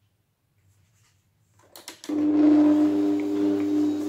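A Bosch stand mixer (kitchen machine) is started with a few clicks about two seconds in, then its motor runs with a steady, even hum as it mixes a minced-meat mixture for meatballs.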